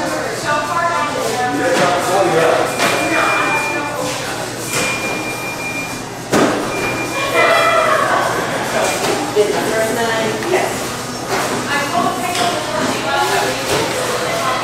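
Indistinct voices talking in the background, with three short high beeps about two seconds apart in the first half and a few sharp knocks, the loudest a thud about six seconds in.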